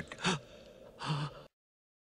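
Two short gasp-like voice sounds from a cartoon character, one at the start and one about a second in, then the soundtrack cuts off abruptly to silence.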